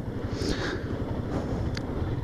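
Karizma ZMR motorcycle's single-cylinder engine running at low speed as the bike rolls in, a low steady rumble.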